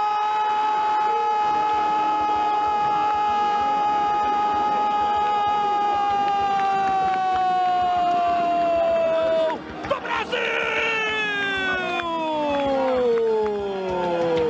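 Brazilian football commentator's drawn-out goal cry: one held note lasting about nine and a half seconds and sagging slightly in pitch, then after a short break a second long shout that slides steadily down in pitch, hailing an equalising goal.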